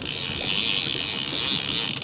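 A fishing reel's ratchet clicker buzzing steadily and rapidly as line is pulled off the reel.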